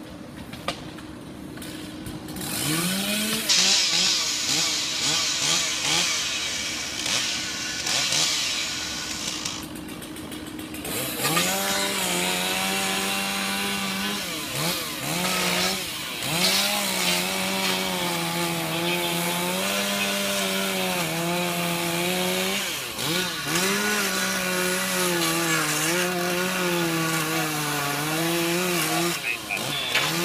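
Two-stroke chainsaw revving and cutting through a shingled house roof to ventilate it. It starts about two seconds in, and its engine pitch repeatedly dips and recovers as the chain bogs under load in the cut.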